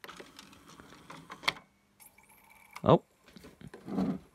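CD player disc tray closing and the transport loading the disc: small plastic clicks and rattles, then a short steady whine as the disc spins up. The disc reads straight away now that the laser power trimmer has been adjusted.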